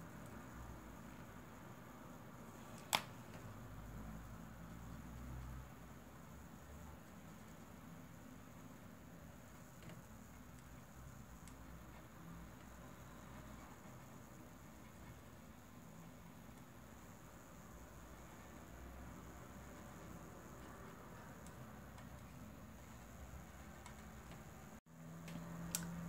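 Quiet room tone with one sharp click about three seconds in: an alcohol marker's cap being pulled off.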